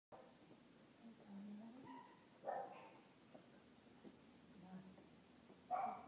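A dog vocalising: a low drawn-out whine about a second in, then two short barks, one about two and a half seconds in and one near the end.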